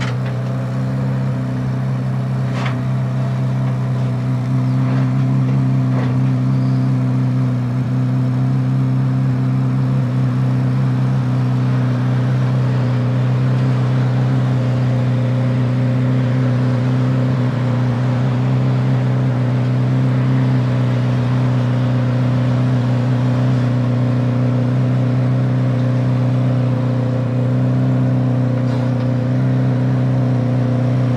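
Corvette C8 Z06's 5.5-litre flat-plane-crank V8 idling steadily as the car creeps down the carrier's ramps under its own power, with a couple of sharp clicks in the first few seconds.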